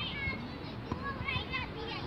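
Children's voices calling and chattering, several short high-pitched shouts heard near the start and again about one and a half seconds in, over a steady background of outdoor noise.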